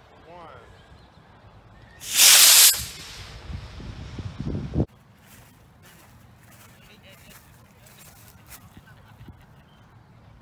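Model rocket's A8-3 black-powder motor firing at liftoff: a loud rushing hiss lasting under a second, about two seconds in.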